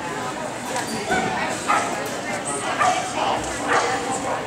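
A dog barking in several short, high yips, over a background of people's chatter.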